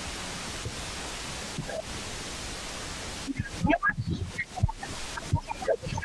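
Steady hiss from a remote audio feed, then short, broken fragments of a voice and clicks in the last few seconds.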